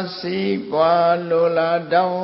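A man's voice chanting Buddhist Pali verses in long, evenly held notes, with a brief breath break about half a second in.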